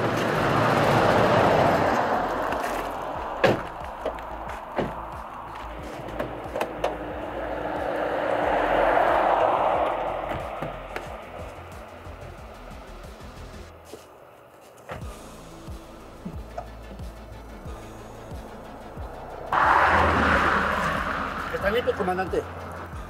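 Road traffic passing by: swells of vehicle noise that rise and fade over several seconds, with a few sharp knocks and clicks in between.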